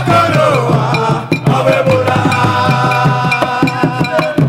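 Gyration chant music: singing voices over a steady, busy beat of drums and percussion.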